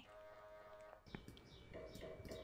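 Near silence: faint room tone, with a faint steady tone in the first second and a single soft click about a second in.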